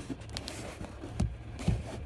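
Handling noise: a few soft knocks and rustles, about three of them, over a faint low hum, as the camera is moved about in the truck cab.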